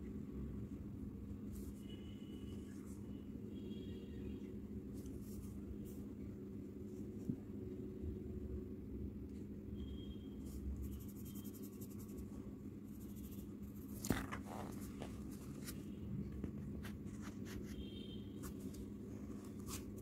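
Pencil scratching on paper in short, irregular strokes as a drawing is sketched and shaded, over a steady low hum.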